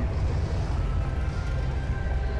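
Low, steady rumble of classic car engines driving slowly past at parade pace.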